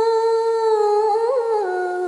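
A woman's voice holding one long sung note in a Khmer song, with a brief turn about halfway through, then stepping down in pitch near the end.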